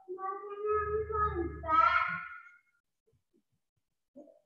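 A child's high-pitched voice, drawn out and sing-song, for about two and a half seconds before it stops.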